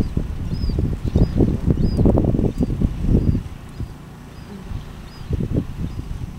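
Gusty wind buffeting the microphone, easing off a little past halfway. A faint, short, high chirp repeats about twice a second throughout.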